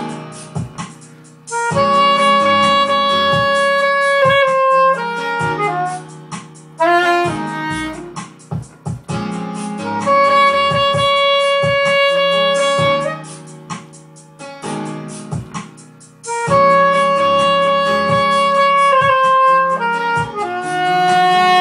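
Soprano saxophone playing a slow ballad melody, with three long held notes about three seconds each, separated by shorter, quieter runs of notes.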